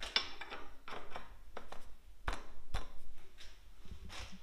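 A steel crank being fitted onto the shaft of a manual sheet-metal bending brake: a series of metal clinks and knocks, with two heavier thumps a little past the middle.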